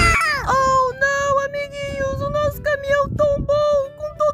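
A dubbed animal cry for a toy horse: a high, voice-like call that opens with a falling slide, then runs as a string of short held notes at one pitch.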